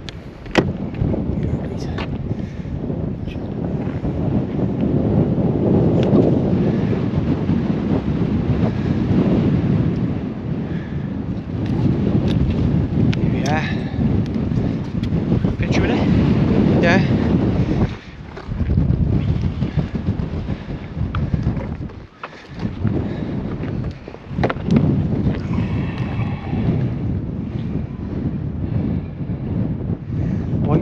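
Wind buffeting the microphone: a heavy, gusting rumble that drops away briefly twice in the second half.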